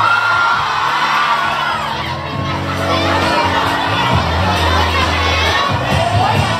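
A crowd of high-pitched voices screaming and cheering over a pop song's instrumental backing track, with no lead vocal.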